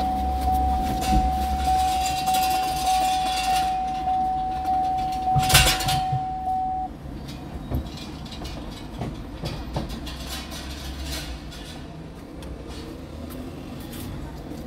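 A car's steady high electronic warning tone sounds, then cuts off suddenly about seven seconds in, with a loud thump just before. After it there is only quieter street noise with a few small clicks as the car's hood is raised and propped open.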